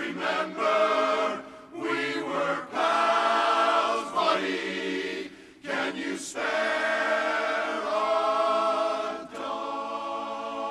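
Men's barbershop chorus singing a cappella in close four-part harmony: sustained chords with a few short breaks, the longest about five and a half seconds in.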